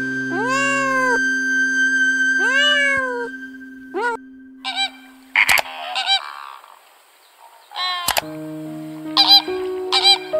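Two meows from a leopard cat, each rising then falling in pitch, about two seconds apart. From about eight seconds in, flamingos give short, goose-like honking calls.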